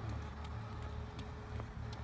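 Steady low rumble, with a few faint sharp taps of tennis balls being hit and bouncing on a hard court.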